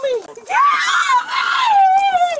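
A woman screaming in one long cry that starts about half a second in, rises and then slowly falls in pitch: a cry of distress as she is forcibly restrained.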